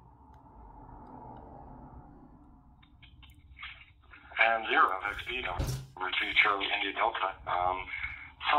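A man's voice replying over the DMR digital voice link, played through the phone's speaker with a thin, narrow, telephone-like sound. He is answering an audio check. The voice comes in about four seconds in, after a few seconds of faint hiss.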